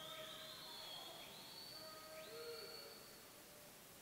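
Near silence: faint room tone of an indoor pool hall, with a few faint steady tones and a slow rising whistle-like tone high up.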